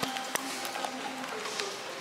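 Soft background music with faint held notes, and a single sharp click about a third of a second in.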